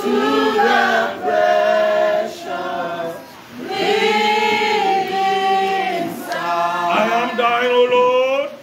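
A church congregation singing a worship song together, in phrases of about three seconds with long held notes and short breaks between them.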